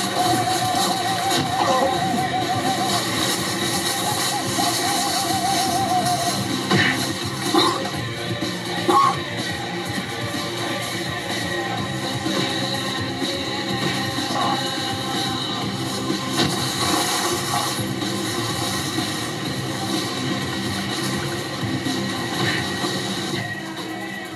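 Background music with a dense, steady texture, a wavering held tone over the first six seconds, and a few short, sharp accents around seven to nine seconds in.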